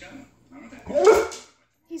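Yellow Labrador retriever giving one drawn-out 'talking' vocalization, about a second long, rising then falling in pitch, as he tries to talk his owner into taking him outside.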